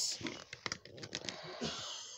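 A run of quick, light clicks and taps with a short hiss near the end. This is handling noise from the camera phone and the packaged items being moved about.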